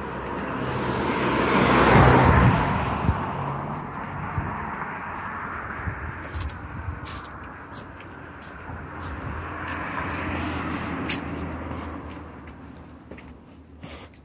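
A car drives past on the street, its engine and tyre noise swelling to a loud peak about two seconds in and then fading. A second, softer swell of passing traffic follows around ten seconds in, with scattered footsteps on cobblestones.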